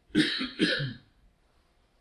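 A man coughs twice in quick succession in the first second.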